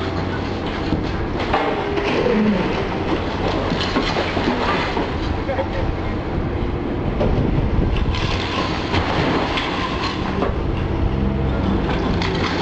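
Liebherr high-reach demolition excavator working a hydraulic crusher into a brick building: a steady diesel engine drone under a continuous clatter and crunch of breaking masonry and falling rubble.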